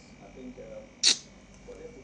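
One short, sharp breathy burst from a man, about a second in, over faint background voices.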